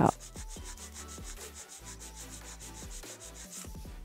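A 180-grit hand file rasping across the side of an acrylic nail in quick, even back-and-forth strokes, about five a second, stopping near the end.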